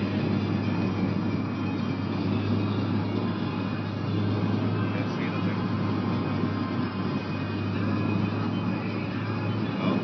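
Steady in-cabin noise of a moving car: a constant low engine and road hum under the rush of the climate fan blowing cold air.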